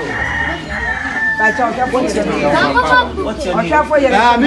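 A rooster crowing: one long call that ends about a second and a half in, with people talking over and after it.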